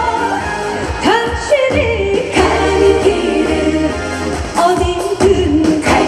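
A woman singing a Korean trot song live into a handheld microphone over loud backing music. Her voice slides up into a phrase about a second in, then holds notes.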